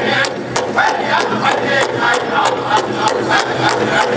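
Powwow drum group playing for a fancy dance: several drummers striking a large drum together in a fast, steady beat of about four to five strokes a second, under high-pitched group singing.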